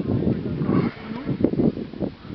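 Wind buffeting the camera microphone in an uneven low rumble, with faint distant children's voices from the pitch.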